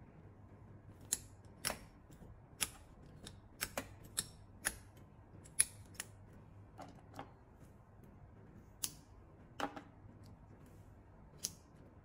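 Manual tufting gun working yarn into backing cloth, its hand-squeezed mechanism giving a series of sharp clicks, roughly one or two a second at an uneven pace.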